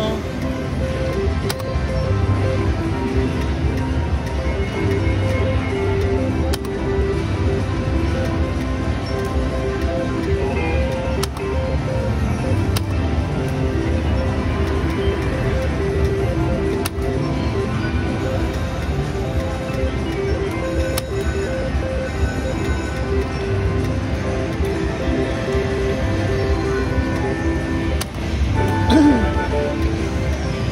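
Steady background music with a pulsing beat and held chiming tones, the ambient sound of a casino floor. The slot machine being played adds nothing of its own, because its speaker is broken.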